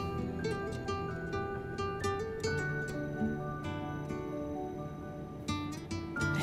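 Soft background music on plucked acoustic guitar, single notes and gentle strums.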